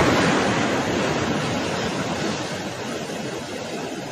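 Ocean surf breaking on a beach: a steady rush of waves that starts abruptly and slowly fades.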